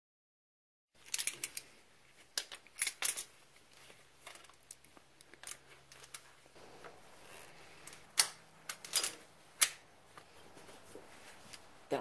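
Irregular sharp metallic clicks and taps of hand-handled timing-belt tensioner hardware (stud, washer, pulley) on a VW ABA 2.0 engine as the old tensioner post is swapped for new parts. The clicks start about a second in, cluster densely early on, then come more sparsely.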